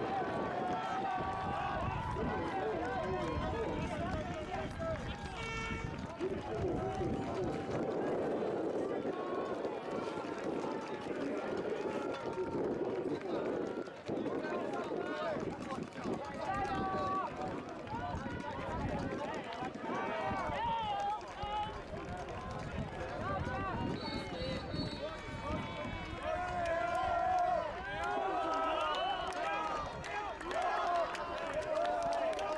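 A babble of many overlapping voices as lacrosse players talk and call out to one another at once, with no single clear speaker.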